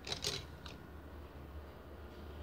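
A few light clicks and rattles of wooden paintbrushes being handled and picked from a pile in the first half second or so, then only a faint steady low hum.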